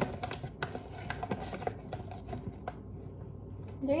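Knife scraping and tapping across the rim of a measuring cup to level off flour. It makes a quick run of short scrapes and clicks that dies away after about two and a half seconds.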